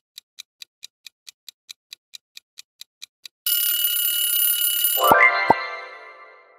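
Countdown timer sound effect ticking about five times a second, then a loud alarm-clock ring for about a second and a half marking time up. After it comes a rising chime with two low thuds that fades away as the answer is revealed.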